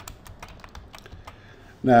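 Typing on a computer keyboard: a run of quick, uneven key clicks.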